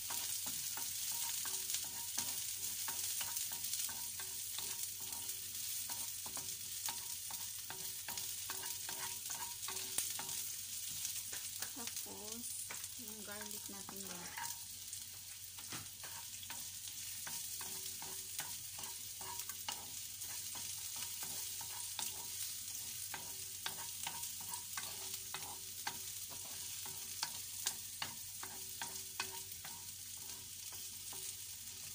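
Sliced onions sizzling in oil in a frying pan, with a steady hiss, while a wooden spatula stirs them, scraping and tapping against the pan in many short clicks.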